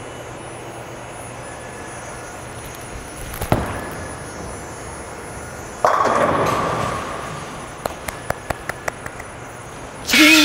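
A bowling ball thuds onto the lane about a third of the way in and rolls, then crashes into the pins a little over two seconds later. The crash fades, followed by a quick series of sharp pin clacks. Bowling alley noise hums steadily underneath.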